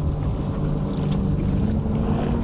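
Boat motor running steadily as a low hum, its pitch stepping up a little near the end, with wind rumbling on the microphone.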